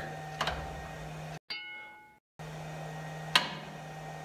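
A steady low electrical hum, broken about a second and a half in by a brief silence that holds a single bell-like ding fading out, after which the hum returns.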